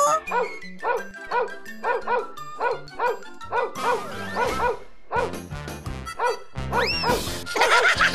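A cartoon dog barking in a rapid, even string of about three barks a second over background music, stopping about five seconds in. A rising sliding sound effect follows near the end.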